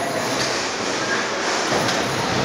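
Electric bumper cars running on a metal floor in a large hall: a steady rolling, rumbling noise.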